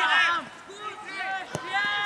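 Players and spectators calling out across an outdoor football pitch, with a single sharp thud of the ball being kicked about three-quarters of the way in.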